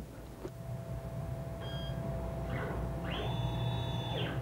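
Numerically controlled via punch: a steady machine hum with electronic beeps. A short beep comes a little under two seconds in, and a longer, higher beep sounds near the end.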